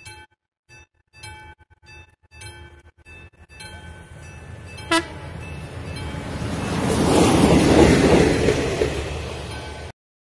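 Level-crossing warning bell ringing in evenly repeated dings, with a brief horn note from an approaching ZSSK class 813 diesel railcar about five seconds in. The railcar's engine and wheels then grow loud as it nears the crossing, and the sound cuts off suddenly just before the end.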